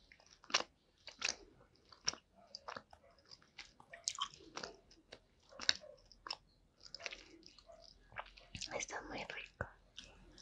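Close-miked chewing and biting of gummy worms, an irregular run of sharp mouth clicks and smacks that gets busier near the end.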